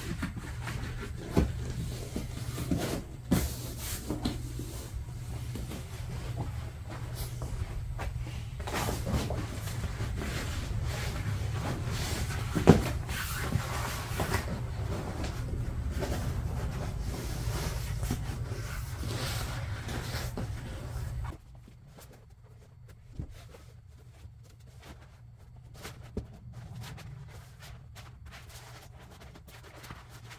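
Rustling, creaking and knocks of a vinyl upholstery cover being worked down over seat foam by hand, with one sharper knock about halfway. A steady low hum underneath stops abruptly about two-thirds of the way in.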